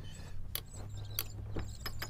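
Sailboat deck winch cranked by its handle, the pawls ratcheting in irregular sharp clicks as it winds in a line under load to take the strain off an override on the other winch.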